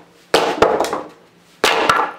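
Boot stepping down hard on a slatted pine-board panel. Two loud bursts of wood cracking and knocking as the top board breaks loose from the frame.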